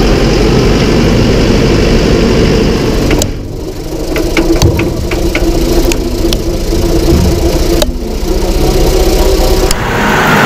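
New Holland T5.115 tractor's four-cylinder turbodiesel engine running steadily as it works through the flooded paddy. About three seconds in the sound drops and turns thinner, and a run of sharp ticks follows over the next few seconds, with a few more near the end.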